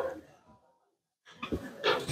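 A pause in a man's speech: his last word fades out, about a second of silence follows, then faint short sounds come back near the end.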